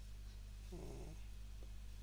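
Faint steady low hum, with one brief, faint pitched vocal sound a little under a second in.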